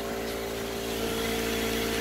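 Hitachi NV83A2 pneumatic coil nailer on its air line, giving off a steady hiss with a faint steady tone. It is a weird sound that the owner suspects means something inside has broken.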